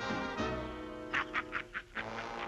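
Brass-led orchestral swing music, and about a second in a cartoon cat's gleeful yell: four short cries in quick succession over the music.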